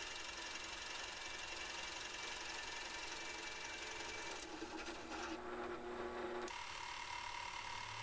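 Drill press running steadily with a large Forstner bit boring into a wood panel; its tone changes for about two seconds midway through.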